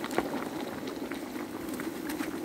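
Ground chile mole paste frying in bubbling hot fat in a glazed clay cazuela, a steady sizzle with a few sharp crackles. The paste is dry, so it fries fast.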